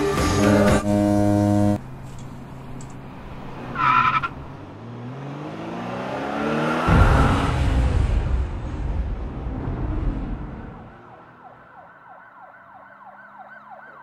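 Car-crash sound effects: a loud held blare, a brief tyre screech, an engine rising in pitch, then a crash about seven seconds in whose noise fades out, followed by a siren wailing.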